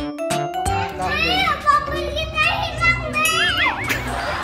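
Small children squealing and calling out playfully without clear words, their high voices sliding up and down, with a long wavering squeal about three and a half seconds in, over background music.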